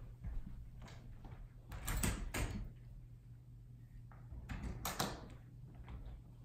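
A few faint knocks and scuffs in three short clusters: a person coming in at the front door and walking across a hardwood floor.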